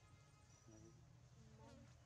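Near silence with faint insect buzzing.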